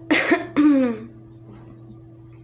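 A woman coughs and clears her throat, a rough burst followed by a voiced sound falling in pitch, all over within about a second. A single guitar note rings faintly under it.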